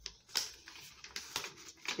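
A folded sheet of sulfite paper rustling and crackling as it is unfolded, in several short crackles.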